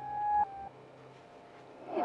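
Soft electronic background-music tones, a few sustained notes stepping down in pitch in the first half-second or so, then a quiet stretch.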